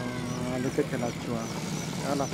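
A man's voice in drawn-out, chant-like phrases, holding one long steady note before breaking into shorter ones. A faint high chirp repeats about three times a second behind it.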